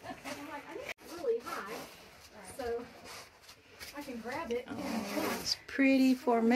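Quiet, indistinct voices of people talking in a cave passage, with rustling of clothing and gear against rock as they climb.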